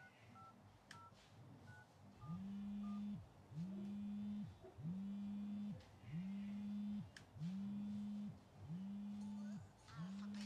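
A few short electronic keypad beeps, then a mobile phone vibrating on a glass-topped table, buzzing in pulses about once a second, a sign of an incoming call.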